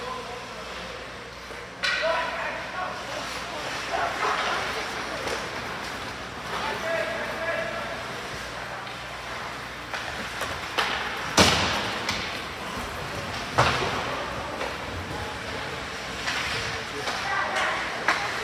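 Ice hockey play in an indoor rink: three sharp cracks from the puck and sticks hitting the boards and ice, the loudest about eleven seconds in. Players' voices call out in between.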